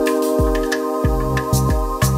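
Instrumental chill house backing track in C minor, from a Cm7–Ab–Bb–Fm7 progression. Held chords over a steady beat, with a deep bass thump that repeats about every two-thirds of a second and light high ticks between.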